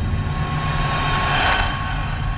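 Cinematic space-soundtrack sound effect: a deep, steady rumble with a rushing whoosh that swells to a peak about one and a half seconds in and then fades.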